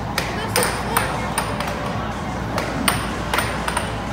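Air hockey game in play: the puck clacks off the mallets and the table's rails in sharp, irregular knocks, about eight in four seconds, over a steady background din.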